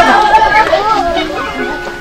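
Voices over background music with steady held notes.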